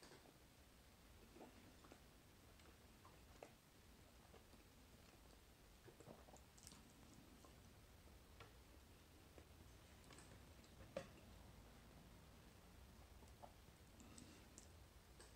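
Near silence, with faint, irregular mouth clicks from chewing a flaky puff-pastry roll with the mouth closed; one sharper click late on.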